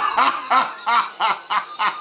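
A person laughing, a quick run of short 'ha' bursts, about three or four a second.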